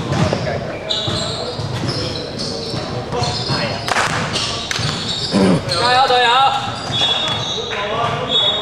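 Basketball being dribbled on a hardwood gym floor, with shoes squeaking and players calling out, echoing in a large sports hall. A high, wavering call stands out about six seconds in.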